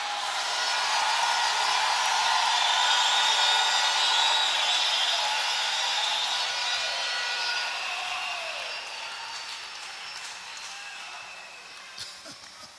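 A large congregation cheering and clapping in a big hall. It swells over the first few seconds, then slowly dies away.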